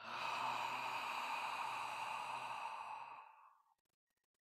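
A man's long, slow exhale, audible as a breathy rush that fades away over about three and a half seconds. It is a deliberate qigong breath-work exhale paced to the movement.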